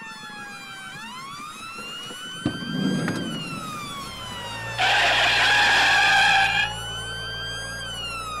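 A siren wailing, its pitch slowly falling and rising. There is a short knock about two and a half seconds in. About five seconds in a loud rushing noise comes in and lasts nearly two seconds, with a low steady hum beneath it.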